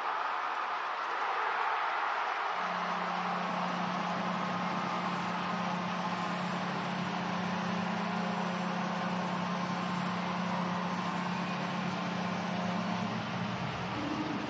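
Ice hockey arena crowd cheering a home goal, with the arena's goal horn blowing one long, steady, low blast from about two and a half seconds in until just before the end.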